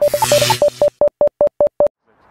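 Title-card sound effect: a brief rush of noise, then a run of about a dozen short electronic beeps on one steady pitch, stopping abruptly just before the end.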